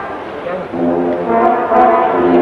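Bersaglieri brass fanfare band playing in a large tent. A held brass chord fades at the start, and from about half a second in the band comes back with a new phrase of sustained chords.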